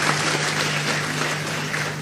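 Audience applauding: dense, steady clapping that eases slightly near the end.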